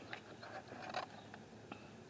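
Faint scattered clicks and light scrapes of a clear plastic seedling cloche being tilted up off the soil, a few short ticks with quiet handling noise between them.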